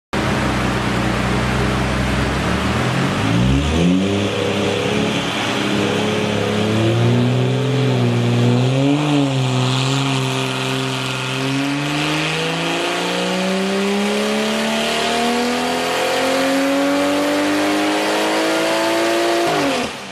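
A tuned BMW 435i's turbocharged 3.0-litre straight-six is run on a chassis dyno through an ARMYTRIX valve-controlled exhaust. It runs low at first, then climbs and wavers in pitch. In the second half it makes a long full-throttle pull with a steadily rising pitch, and the sound drops off abruptly near the end as the throttle closes. This is a roughly 530 hp pull on 21 psi of boost.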